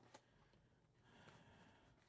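Near silence: room tone, with faint rustling as a cardboard card mailer is handled.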